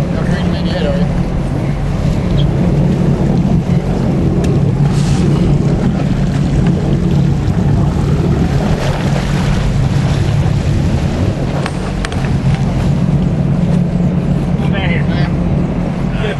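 Fishing boat's engine running with a steady low drone, under wind and water noise.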